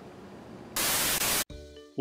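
Faint hiss, then a loud burst of static about three-quarters of a second in, lasting under a second and cutting off abruptly: a TV-static glitch effect marking a cut in the edit.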